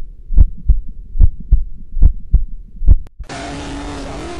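Heartbeat sound effect: low, paired thumps repeating about once every 0.8 seconds, four times. Near the end a click, then a steady hiss with a low hum starts.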